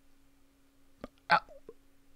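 A man's short mouth sounds at the microphone: a small click and then a quick sharp catch of breath, a little after a second in, just before he speaks. A faint steady hum lies under the quiet.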